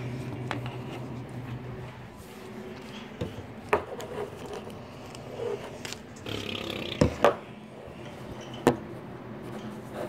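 A few sharp plastic clicks and knocks from handling and priming a modified Nerf Hammershot blaster, the loudest a pair about seven seconds in, over a steady low room hum.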